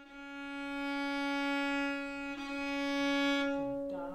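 Viola playing one long bowed note, rich in overtones, that swells and is held for about four seconds, with a slight break about two and a half seconds in, then fades near the end.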